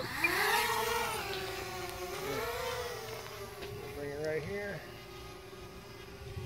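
Blade 200 QX quadcopter's motors and propellers rising in pitch as it throttles up and lifts off. They then settle into a steady hover whine that wavers with small throttle corrections.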